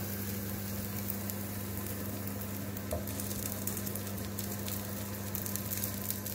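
Moong dal dosa batter sizzling in oil on a hot pan, a steady fine crackle, over a steady low hum.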